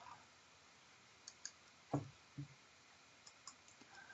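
Near silence broken by a few faint computer mouse clicks, the two loudest close together about two seconds in.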